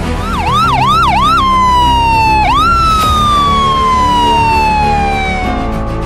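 Electronic ambulance siren: four quick rising-and-falling whoops, then a long, slowly falling tone that jumps back up about two and a half seconds in and falls again, stopping near the end.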